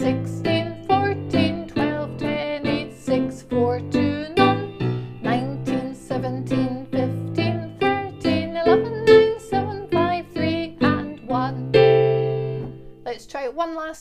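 Electronic keyboard playing a bouncy introduction tune in a steady beat, ending on a held chord about twelve seconds in that dies away.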